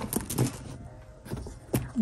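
A small gold-tone padlock and its key being handled against a bag's metal hardware: a handful of light, separate metal clicks and taps spread over two seconds.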